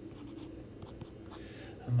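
Stylus writing on a tablet screen: a few short, faint scratchy strokes, over a steady low hum.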